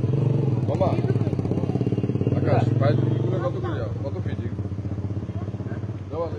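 A motorcycle engine running steadily at low revs, growing fainter in the second half, with faint voices nearby.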